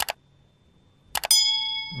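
Subscribe-button animation sound effect: a short click, then about a second in two quick clicks followed by a bell-like ding that rings for about half a second and fades.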